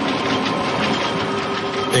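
Textile factory machinery running: a steady mechanical whir with a faint rapid clatter.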